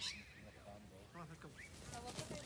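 Sheep bleating briefly, a short quavering call.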